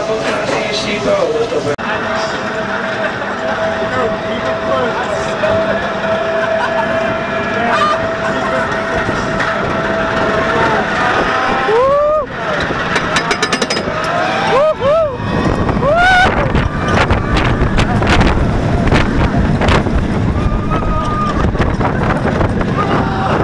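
Voices in the loading station of a Vekoma SLC suspended looping coaster over a steady hum; then, about twelve seconds in, riders on board give several rising yells and screams, followed by rushing wind and the rumble of the train running through its inversions.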